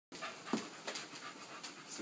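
English bulldog mix panting in quick, noisy breaths, about three a second, while excited at play.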